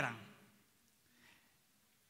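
A man's voice finishing a spoken phrase, its sound dying away in the room within the first half second, then near silence.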